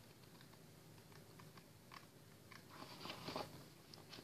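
Faint rustling and soft crinkling of scrapbook paper sheets being lifted and turned in a thick pad, a few more small crinkles in the second half.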